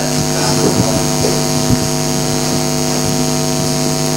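Steady electrical mains hum and buzz in the sound system, several tones held level, with hiss above and a few faint ticks.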